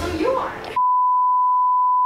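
Television colour-bars test tone edited in as a bleep: one steady, single-pitched beep that starts just under a second in and cuts off suddenly at the end.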